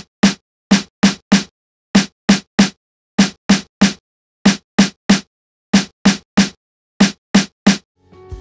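MPC snare drum sample triggered over and over in quick groups of two or three: short, dry hits with silence between them. It is being shaped with an AIR Transient plug-in, its attack and sustain settings changed between the hits.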